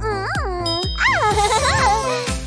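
Children's cartoon music with a twinkling chime, over which a cartoon voice makes wordless sounds that slide up and down in pitch.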